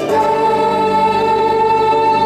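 Live pop music from a female vocal group over a backing track: the voices hold one long, steady note together.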